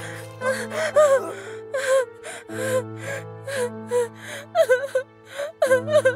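A woman sobbing in short gasping breaths, about two a second, over sustained background music.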